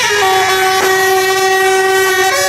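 Procession band of trumpets and other horns holding a long, loud chord, with one drum or cymbal stroke from the percussion cart about halfway through.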